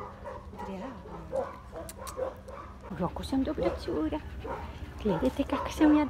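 A husky-type dog whining in short calls that bend up and down in pitch; they are soft at first and come more often in the second half.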